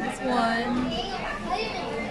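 Background chatter of people's voices, including children's voices, around a busy public space.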